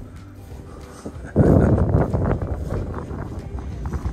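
Wind gusting against the microphone: a low rumble that jumps suddenly much louder about a second and a half in, then keeps buffeting.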